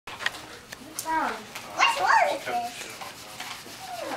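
Electronic yips from a battery-powered plush toy puppy: a few short calls, bending up and down in pitch, about a second apart.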